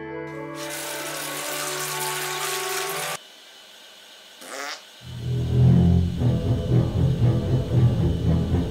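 A toilet flushing: a rushing noise for about two and a half seconds that cuts off sharply, over background music. Loud drum-heavy music takes over about five seconds in.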